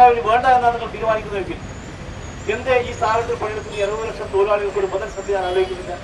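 A crowd of women marchers chanting protest slogans in short, high-pitched phrases, some held long, over a low street-noise background.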